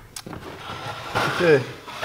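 A man says "Okay," after a second or so of soft rustling handling noise.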